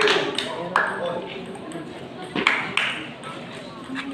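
Table tennis rally: a table tennis ball struck back and forth, making sharp, irregularly spaced clicks as it hits the paddles and the table, over background chatter.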